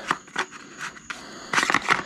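Light plastic clicks and rattles from hands handling the battery compartment, plastic body panel and battery leads of a Losi Promoto-MX RC motorcycle. A couple of separate clicks come first, then a quicker cluster about one and a half seconds in.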